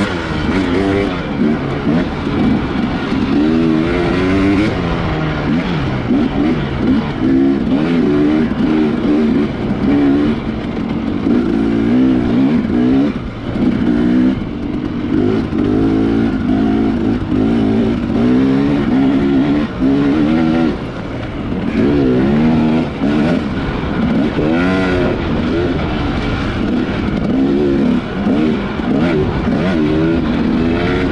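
Husqvarna TX300 two-stroke dirt bike engine, heard from on the bike, revving hard and continuously. Its pitch rises and falls every second or two as the rider works the throttle and gears, with short drops off the throttle about 13 seconds in and again around 20 seconds.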